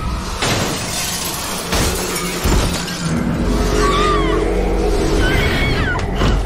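Film sound effects of objects shattering and crashing, several sharp impacts in the first half, over a low rumble, with high wavering squeals in the second half.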